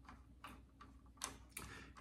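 Faint, irregular clicks of a hand screwdriver turning out the small screws that hold a die-cast model car to its display base, about four clicks in two seconds.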